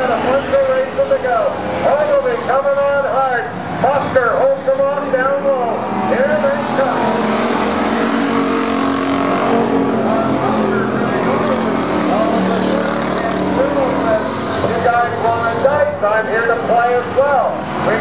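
Several Thunder Car stock cars racing together round a paved oval, their engines running hard. The din is loudest in the middle, as the pack passes close.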